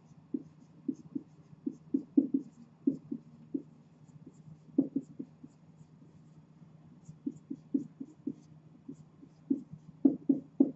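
Marker pen writing on a whiteboard: clusters of short, irregular strokes and taps with brief pauses between words, over a faint steady low hum.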